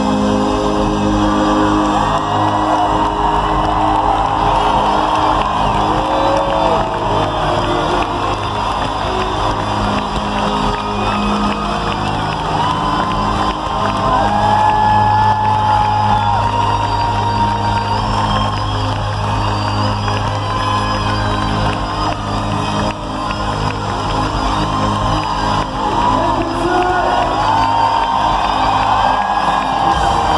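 Arena crowd cheering, whooping and screaming over live music that holds a steady low chord.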